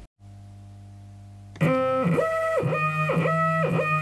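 Stepper motor playing a tune: its step rate sets the pitch, giving a buzzy, electronic-sounding melody of short notes, about two or three a second. Before the tune starts about one and a half seconds in, only a faint steady hum is heard.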